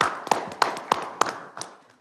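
A small group applauding, with a few louder claps about three a second standing out; the applause dies away towards the end.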